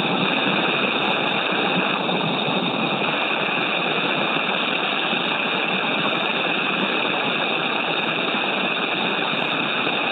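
Steady rushing hiss on an open spacecraft radio loop, with no voices, while the spacesuits are being purged with oxygen.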